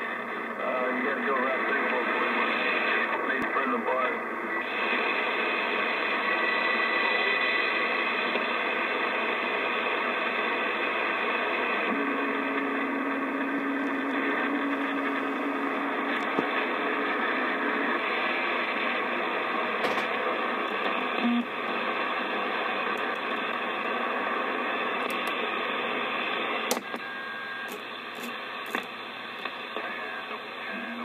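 President Adams AM-SSB CB transceiver receiving the 11-metre band: steady static hiss with faint, garbled distant voices coming through. Near the end there is a click and the hiss drops a little as the radio is switched to another channel.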